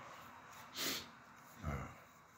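A man's short, sharp breath through the nose, then a hesitant 'uh' near the end.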